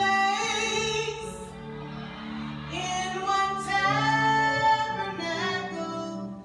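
A song with a woman singing long held notes that slide in pitch, over instrumental backing.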